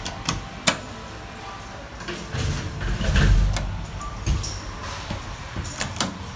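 Hitachi elevator car: sharp clicks of the floor-call button being pressed, then the car doors sliding shut with a low rumble and thud around the middle, followed by a few lighter clicks.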